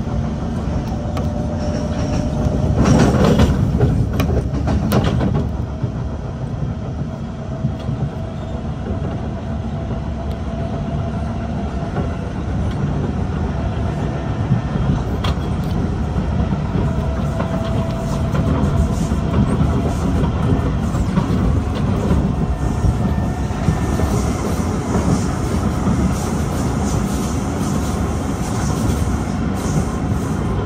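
Kawasaki C151 MRT train running, heard from inside the car: a steady low rumble of wheels on track, with a louder spell of clattering about three to five seconds in and a faint steady whine underneath.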